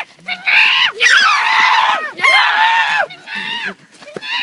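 Teenage boys' voices shouting and shrieking in high, drawn-out yells, several at once, in a string of bursts; the longest runs through the second second.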